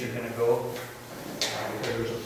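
Speech only: a man talking, unclear to the speech recogniser.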